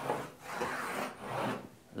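Chalk drawn across a blackboard: a dry scraping rasp in two long strokes while an outline is sketched.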